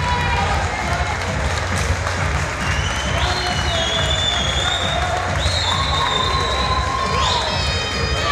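Live fight crowd shouting and cheering, with a steady din of voices and several long drawn-out shouts, some of them rising in pitch.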